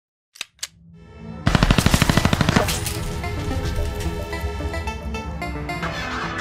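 Two sharp clicks, then a rising swell and a burst of automatic gunfire, about a dozen rapid shots in a second, followed by music with a steady beat.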